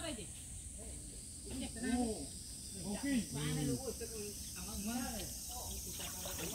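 A steady, high-pitched insect chorus runs throughout, with a person's voice talking in short stretches over it.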